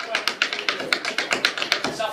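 Shoes tapping out a quick traditional step-dance on a wooden board, a rapid even run of about eight taps a second.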